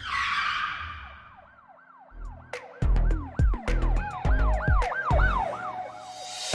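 Channel intro sting: a whoosh hit that dies away, then a looping siren-like wail rising and falling about three times a second. Heavy bass drum hits and sharp clicks join about two seconds in.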